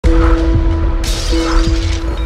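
Intro music with a heavy bass beat and held tones, with a shattering sound effect about a second in as the animated logo breaks apart.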